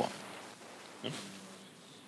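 A pause in a lecture: faint room noise over the microphone, with a short, soft breath noise from the speaker about a second in.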